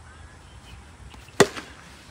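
A cricket bat striking the ball once, a single sharp crack about one and a half seconds in, with a brief ring after it.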